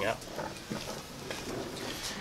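A man's word ends, then only faint, even background noise with no distinct sound.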